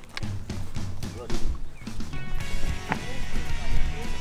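Background music starts about two seconds in and carries on steadily, over some quiet talk and low outdoor handling noise.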